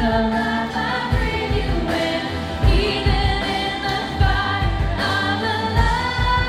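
Live worship band: women singing a contemporary worship song, backed by acoustic guitar and drums, with a low drum beat under the voices.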